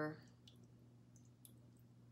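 The end of a spoken word, then near silence: room tone with a steady low hum and a few faint, scattered clicks.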